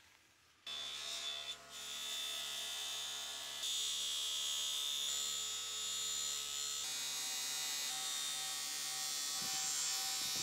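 Bench grinder fitted with a buffing wheel running, a steady motor hum with a whine above it, as a steel knife blade is pressed against the wheel to polish it. It starts about a second in, and the tone shifts slightly a couple of times.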